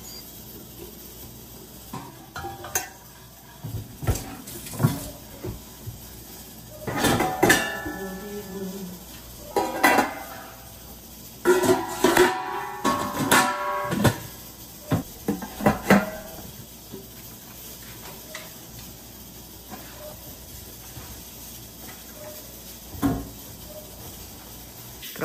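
Stainless steel pots clanking and knocking against each other and on the counter as cooked vegetables are tipped from one pot into a large stockpot. Several bursts of ringing metal clatter come about 7 s, 10 s and 12–16 s in, with quieter handling between.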